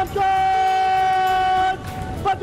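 Military brass band holding one long chord of several notes that stops shortly before the end, followed by the first note of the next held chord.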